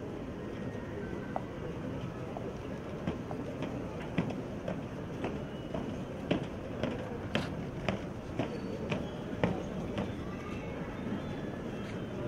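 Marching footsteps on stone paving, evenly spaced at about two steps a second, over a steady outdoor crowd background.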